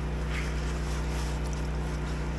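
Pressure washer's petrol engine running steadily, a low even drone, with faint rustles of wet leaves being picked up by hand.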